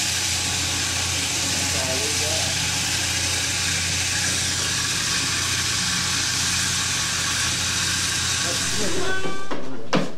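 Electric shearing machine running steadily, a motor hum under the high hiss of the handpiece, cutting off near the end, with voices faint over it.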